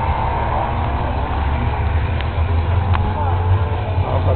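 Race cars running around a distant grass-and-dirt endurance circuit, heard far off under a heavy, uneven low rumble.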